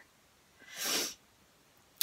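A woman's audible intake of breath: one noisy, unpitched breath in, starting about half a second in and lasting under a second.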